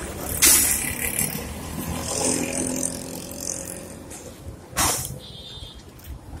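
Street traffic noise from passing vehicles, with a short loud burst of noise about half a second in and another near the end, and a held low engine-like tone in the middle.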